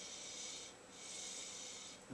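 Two faint sniffs through the nose, each a soft hiss of about a second, as a glass of white wine is nosed during a tasting.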